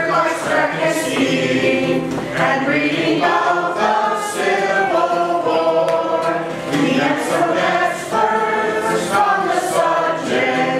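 A group of men and women singing a song together from lyric sheets, with acoustic guitar accompaniment, in phrases with brief breaths between them.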